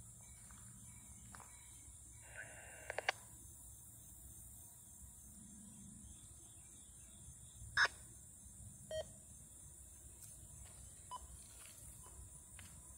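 Faint, steady low rumble of a distant diesel-led freight train approaching. A few short sharp sounds cut in, the loudest about eight seconds in.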